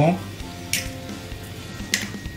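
Two light, sharp knocks about a second apart as a broken eggshell and a small glass are handled on a wooden chopping board, over faint steady background music.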